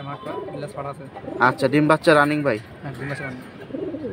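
Domestic pigeons cooing, with a man's voice over them.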